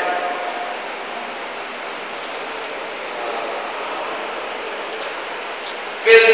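Steady rushing noise, like hiss or moving air, with no distinct events. It swells slightly about halfway through.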